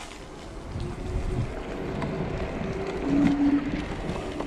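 Zero 10X dual-motor electric scooter climbing a steep asphalt lane: low rumble of tyres on the road and wind across the microphone, growing louder as it goes, with a short steady hum about three seconds in. It is running in eco mode, so it climbs without full power.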